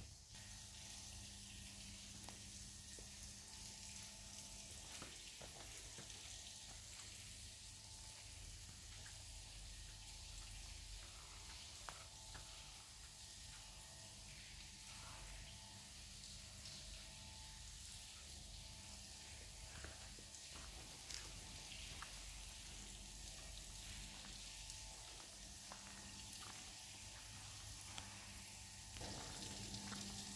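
Near silence: a faint, steady hiss of cave ambience, with a low hum and scattered faint clicks.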